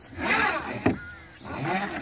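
Recycled-plastic chicken coop door scraping as it is moved by its handle, with one sharp click a little under a second in and a shorter scrape near the end.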